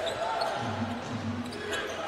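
A basketball being dribbled on a hardwood court: faint, scattered bounces over low, steady background noise in a large arena.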